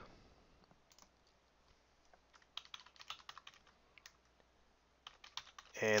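Faint keystrokes on a computer keyboard, irregular clicks in short quick runs, as a web address is typed.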